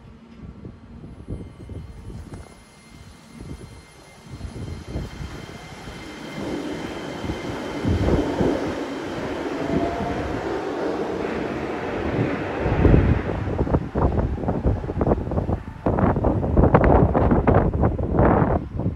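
Saitama New Shuttle 2020-series rubber-tyred guideway train pulling away from the station, its running noise building with a faint rising whine as it accelerates. From about two-thirds of the way in, gusty wind buffeting the microphone is louder than the train.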